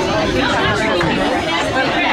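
Several people talking at once in overlapping chatter, with no one voice standing out, steady throughout.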